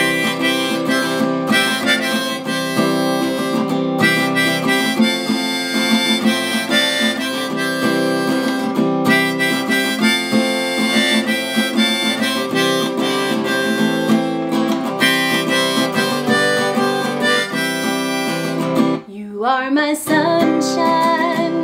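Harmonica in a neck rack playing a melody over a strummed Gibson acoustic guitar. The harmonica breaks off about a second before the end, with a rising slide in pitch as it stops.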